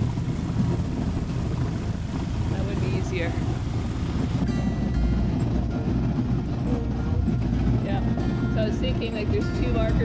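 A small outboard motor runs steadily, pushing an inflatable dinghy through thin ice while it tows a sailboat. Background music comes in about halfway through.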